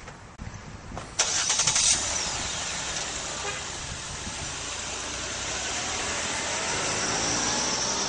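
Motor vehicle noise: a sudden loud burst about a second in, then a steady rushing sound that slowly grows louder.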